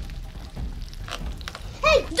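Bacon strips sizzling on a hot electric griddle, a steady hiss of frying fat.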